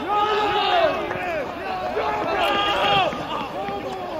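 Several voices shouting and cheering together over each other, celebrating a goal just scored in a football match. The cheering is loudest at the start, swells again with high-pitched yells about two to three seconds in, then dies down.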